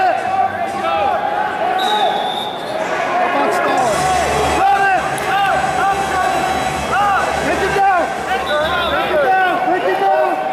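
Several raised voices shouting and calling out over one another, echoing in a large hall, with no break.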